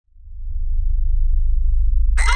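A deep, steady bass drone that fades in over the first half second, with nothing higher-pitched above it.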